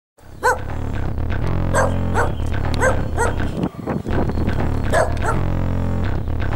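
A dog barking about seven times, in uneven pairs, over electronic music with a heavy bass line.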